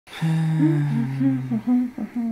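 Two voices humming with closed lips: one holds a steady low note for over a second while a higher hummed line wavers above it, then breaks into a few short hummed notes near the end.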